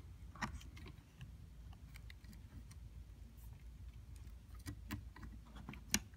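Faint small clicks and taps of fingers handling plastic parts as a small wiring connector is pushed into an instrument cluster's circuit board, a few clicks about half a second in and several more near the end, over a low steady hum.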